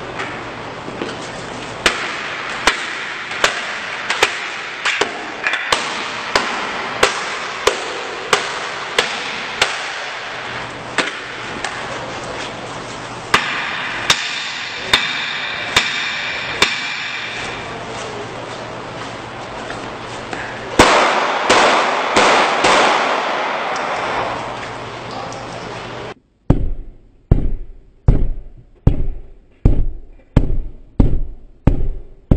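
Repeated sharp impacts against an armoured sedan's bullet-resistant window, roughly one every 0.7 seconds for about twenty seconds, with a denser clatter near the end of that run. Then heavy, low thuds in a steady beat as the glass is struck, heard from inside the car.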